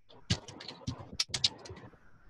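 A quick, irregular run of about ten sharp clicks and knocks in under two seconds.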